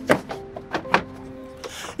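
Background music: held synthesizer-like notes with a few sharp percussive hits, and a swell of hiss near the end.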